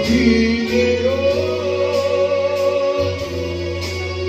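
A man singing a slow song live into a microphone, holding long notes, with electronic keyboard backing and bass amplified through a PA speaker.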